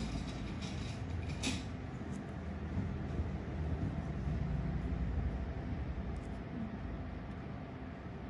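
Steady low rumble with a faint hum, and one short click about a second and a half in.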